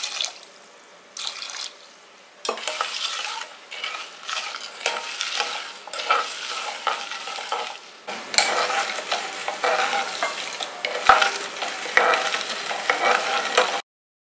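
A steel ladle stirring lumps of jaggery in water in an aluminium saucepan, scraping and clinking against the pan in irregular strokes, as the jaggery is dissolved into syrup. It is quiet for the first couple of seconds, and the stirring cuts off suddenly near the end.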